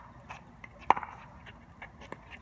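Pickleball paddle striking the hard plastic ball: one sharp pock about a second in, during a rally, with fainter clicks around it.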